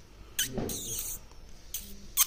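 Rose-ringed parakeet making three short, high squeaks, the first falling in pitch.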